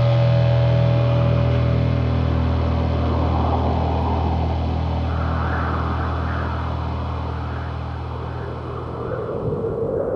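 A quiet passage in a black metal track: a loud, steady low droning note holds while the ringing guitar notes above it fade, and a wavering higher sound swells and recedes through the middle. The overall level sinks slowly, then begins to rise again near the end.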